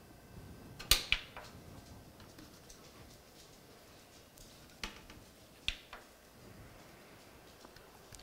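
A few short clicks and light knocks from hands working at a desktop PC tower, swapping USB flash drives: a pair about a second in, then two more single clicks a little past the middle, over faint room noise.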